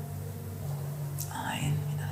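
A soft breathy, whisper-like sound from the yoga instructor about one and a half seconds in, over a low steady background tone.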